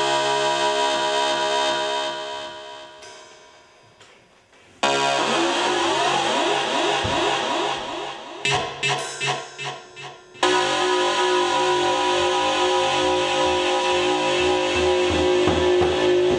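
Electric guitar music with effects. A sustained chord fades away about three seconds in, leaving a brief near silence. Ringing tones then come in suddenly, turn choppy and stop-start around nine seconds in, and give way to a loud held note a little after ten seconds.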